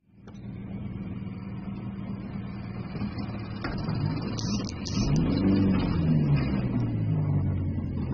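A motor vehicle engine running steadily, then revving up and down and growing louder from about five seconds in.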